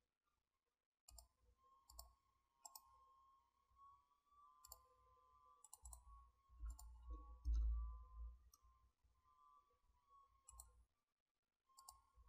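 Faint computer mouse clicks, about ten spread irregularly, over a faint steady high whine, with a low thump about seven and a half seconds in as the loudest moment.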